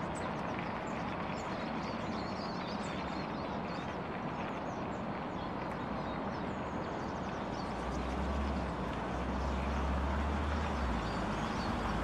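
Steady rumble of distant traffic, with small birds chirping faintly and often in the background. A deeper low hum swells for about three seconds near the end.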